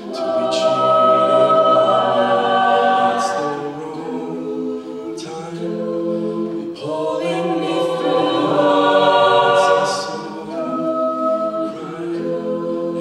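Mixed-voice a cappella group singing: a male lead voice over sustained backing chords, the sound swelling louder twice, about two seconds in and again about nine seconds in.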